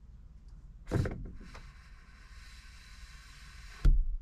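PVC vent pipe being pushed up through a hole in a wall's top plate: a knock about a second in, a steady scraping as the pipe slides through, then a loud thump as it stops near the end.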